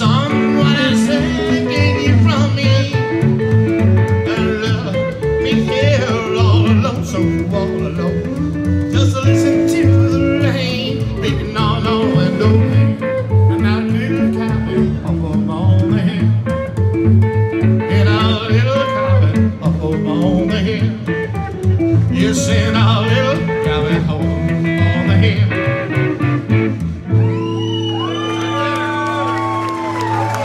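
Live roots-country band: upright bass, acoustic and electric guitars, with a man singing. About three seconds before the end the song stops on one held final chord.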